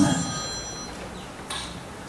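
A man's lecture voice ends on a word and gives way to a pause: the hall's reverberation dies away over about a second, with faint high steady tones early in the pause and a soft click about a second and a half in.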